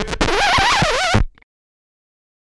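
Music with a voice singing a wavering line with heavy vibrato, cut off abruptly just over a second in, followed by dead silence.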